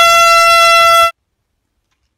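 Air horn blasting one loud, steady note that cuts off suddenly about a second in.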